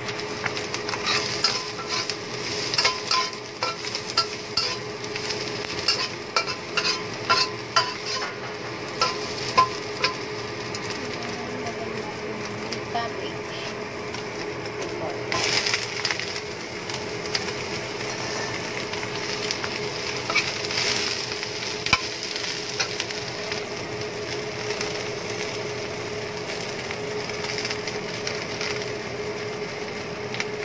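Spatula scraping and tapping against a wok while stir-frying in hot oil, a quick run of strokes for the first ten seconds. About fifteen seconds in, a batch of shredded leafy greens drops into the wok, followed by steadier frying and stirring, over a constant hum.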